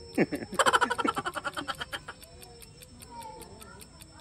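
A man laughing: a burst of quick 'ha-ha-ha' pulses lasting about a second and a half, fading away.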